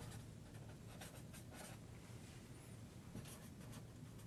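Faint strokes of a marker writing on paper, a quick run of short scratches as a couple of words are written out.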